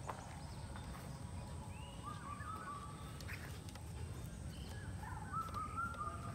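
Birds calling in trees, with short hooked calls about two seconds in and again near the end, over a low steady rumble.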